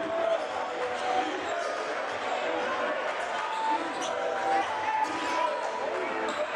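Live basketball play on a hardwood court: a ball dribbling with scattered knocks, brief high sneaker squeaks, and a steady murmur of crowd and voices in the arena.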